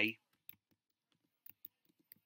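The tail of a spoken word, then near silence broken by a few faint, scattered clicks, typical of keys pressed on a computer keyboard.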